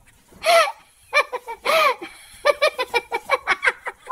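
People laughing: two drawn-out squeals of laughter, then a quick run of giggling.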